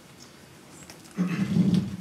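A man's short laugh, starting a little past halfway and lasting under a second.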